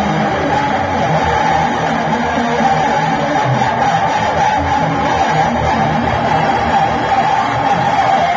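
Electric guitar played through a small combo amplifier: a continuous rock part with no breaks.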